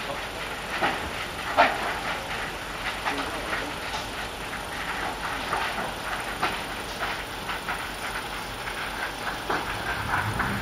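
Burning substation power transformer: a steady rushing noise with irregular crackles and pops, the sharpest about a second and a half in.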